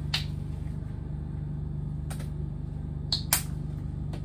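Steady low machine hum with a few short sharp clicks of items being handled, the two loudest close together about three seconds in.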